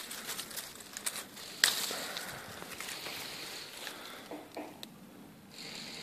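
Dry twigs and dead leaves rustling and crackling as a hand works a wild squash loose from its vine, with one sharp snap about a second and a half in as the squash comes free.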